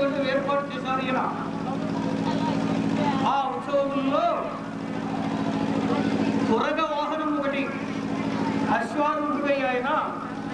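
A person's voice in short phrases, over a steady low hum that drops out briefly a couple of times.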